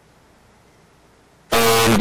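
Faint steady hiss of an open video-call line, then a man's voice comes in loudly about three-quarters of the way through.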